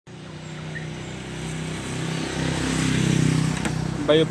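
A motor vehicle engine going past, its hum growing louder for about three seconds and then easing slightly.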